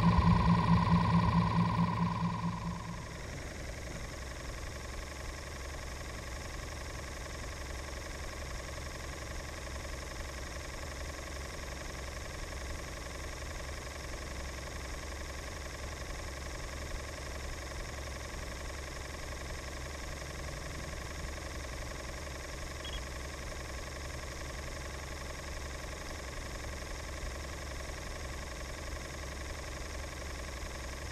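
A boat motor running with a steady low hum. It is louder for the first two seconds or so, then drops to a lower, even level that holds for the rest of the time.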